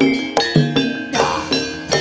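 East Javanese jaranan gamelan music played live: struck, ringing metal percussion in a steady beat of about two and a half strokes a second over a held low tone.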